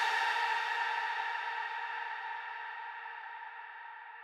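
Reverb tail of the track's last synth chord, a few sustained notes fading away slowly and evenly with no new notes struck.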